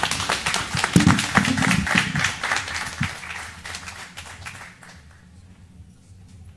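Audience applauding, a dense patter of many hands clapping that dies away about four to five seconds in.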